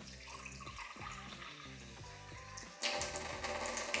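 Water running from a reverse osmosis drinking-water faucet into a glass. It starts suddenly about three seconds in and is the loudest sound, over background music.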